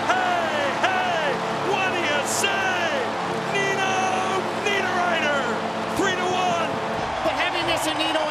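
Arena goal horn blaring over a cheering, whooping home crowd, marking a home-team goal; the horn stops about seven seconds in.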